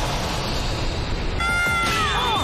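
Cartoon fight-cloud scuffle sound effects, a dense noisy brawl under music, with a high held cry or tone coming in near the end and then sliding downward.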